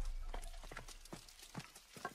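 The low rumble of a deep boom dying away, with irregular sharp clicks scattered through it.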